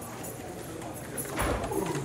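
Footsteps clicking on a hard floor, with one louder, deep thump about a second and a half in, over faint murmured voices.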